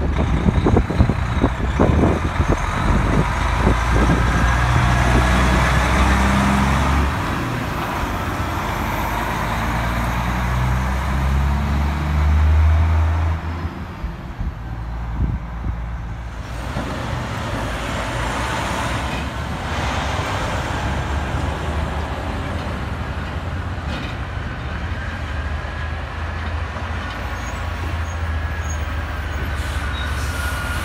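Heavy diesel truck engines at close range: a Peterbilt truck pulls through, its engine note stepping up and down as it works through the gears, with several sharp knocks in the first seconds. About 14 seconds in the sound drops to a steadier, quieter diesel engine sound from trucks going by.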